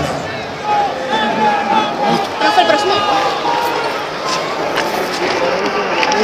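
Several people talking indistinctly at once, overlapping background chatter with no clear words.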